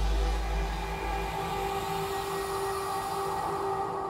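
Dramatic film score: a deep boom hits at the start and dies away over about a second and a half, leaving a steady rumbling drone with held tones.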